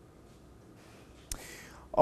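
Faint room tone, then about a second and a half in a sharp mouth click and a short intake of breath just before the newsreader speaks.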